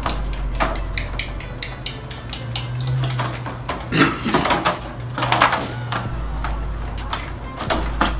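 Homemade glue slime being squeezed and stretched by hand: a quick run of small, sticky clicks in the first couple of seconds, then a few louder squishy handling noises around the middle.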